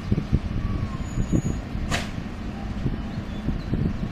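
PKP EU07 electric locomotive hauling a passenger train as it approaches: a low, uneven rumble, with one sharp click about halfway through.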